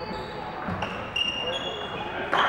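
Badminton shoes squeaking on a sports-hall floor: several short, high-pitched squeaks at slightly different pitches as players move on the courts, with a sharp knock a little under a second in.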